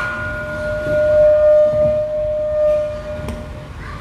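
A single steady high tone held through the sound system for about three seconds, then fading, over the low hum of a live venue.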